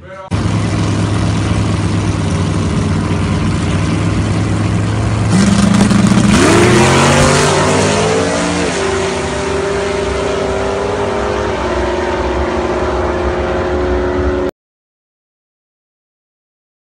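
Classic Mustang fastback drag car's V8 running steady and loud at the starting line. About five seconds in it launches hard and revs up, its rising pitch dropping back at several upshifts as it pulls away down the strip. The sound stops abruptly near the end.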